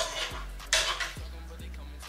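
A metal spoon scraping and clinking against a frying pan as food is spooned out of it, with one sharp scrape about two-thirds of a second in. Steady background music plays underneath.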